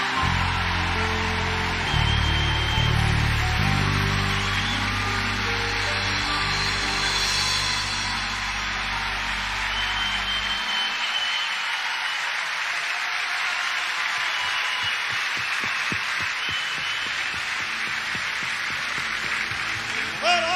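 A live band holds the final chord of a song over an audience clapping and cheering; the band stops about halfway through and the applause carries on alone.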